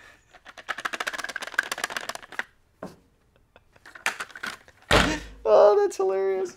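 A man's short, rapid laugh, then a loud whoosh about five seconds in followed by a held musical note.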